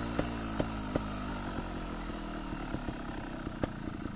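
Scorpa trials motorcycle engine running at a low idle, its pitch drifting slightly down as it gradually gets quieter, with scattered sharp clicks over it.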